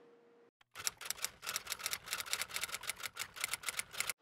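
Typewriter-style typing sound effect: a rapid, even run of key clicks, about eight a second, starting just under a second in.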